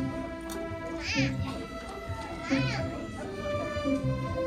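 A student string orchestra of violins and cellos playing sustained notes over a low repeating figure. Two high sliding notes swoop up and back down, about a second and a half apart.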